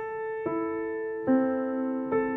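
Acoustic piano played slowly: single notes of a broken chord struck one after another, a higher note about half a second in and a lower one just over a second in, each left ringing on over the last.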